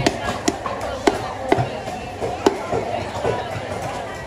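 A knife chopping a fish on a thick wooden chopping block: sharp, irregular knocks roughly every half second, the loudest about two and a half seconds in. Chatter and music run underneath.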